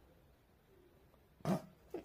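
Near silence, then about one and a half seconds in a girl breaks into a short burst of laughter.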